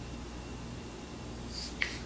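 Quiet room tone with a low steady hum, and one small sharp click near the end.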